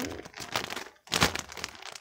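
Clear plastic packaging crinkling as it is handled, with a brief louder crackle a little over a second in.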